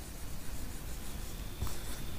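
Marker pen writing on a whiteboard, a faint scratchy rubbing of pen strokes.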